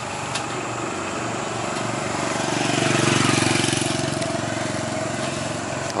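A motor vehicle's engine passing by on the road, swelling to its loudest about three seconds in and then fading, over a steady background of traffic noise.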